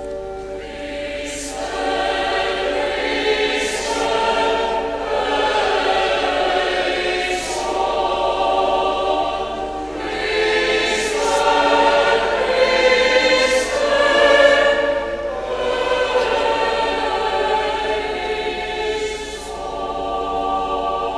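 Choir singing a slow sung refrain in several sustained phrases: the sung response to each petition of a litany.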